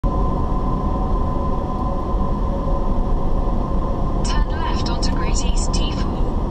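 Steady low road and engine rumble of a car driving, heard from inside the cabin through a dashcam, with a constant whine underneath. Shortly before the end come a few brief high voice-like sounds.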